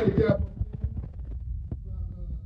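A man's voice ends with a few words through a hall PA. Then a low rumble with soft, irregular knocks and a couple of sharper clicks comes from the handheld microphone as it is held in his hand.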